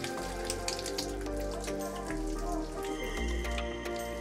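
Background music with held melodic notes over a low bass line.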